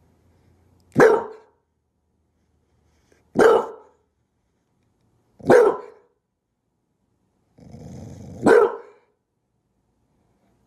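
English bulldog barking four times, short single barks a couple of seconds apart, with a low growl running into the last bark.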